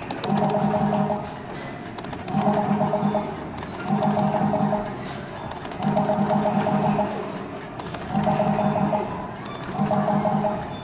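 Arcade ball-catching game machine playing a short electronic musical phrase that repeats about every two seconds, with bursts of sharp clicking between the phrases.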